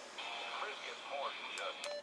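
The Yaesu VX3R handheld radio's small speaker plays faint AM broadcast-band talk over a steady hiss. Near the end comes a key click with a short beep as the band is switched.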